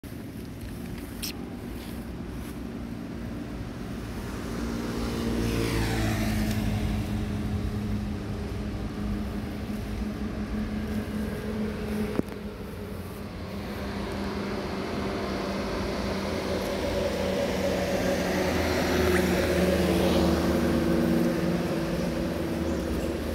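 Motor vehicles passing on a road, with engine hum and tyre noise. One passes loudest about six seconds in and another builds to a peak near the end. There is a single sharp click about halfway through.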